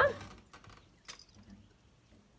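A woman's voice finishing a coaxing call of "come on", then near silence with a few faint, light clicks.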